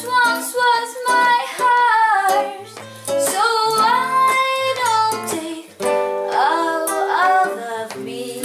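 A woman singing with a classical guitar accompaniment: plucked chords under sung phrases with long held notes and short breaks between lines.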